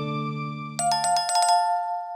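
A news channel's outro jingle: a held music chord fades out, then a bright bell-like chime sounds about a second in, with a few quick struck notes settling into two ringing tones.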